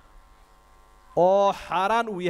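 A faint steady electrical hum through the microphone system during a pause, then a man's voice resumes speaking into the microphone a little over a second in, much louder than the hum.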